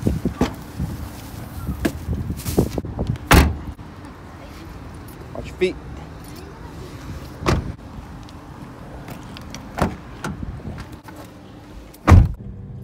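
Car doors being opened and shut as people get into the car: a string of thuds and knocks, the loudest about three and a half seconds in.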